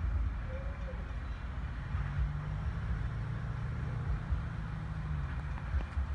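Distant CSX EMD SD40-3 diesel-electric locomotive running as it approaches, a low steady engine drone that swells from about two seconds in and fades again a second before the end, over a low rumble.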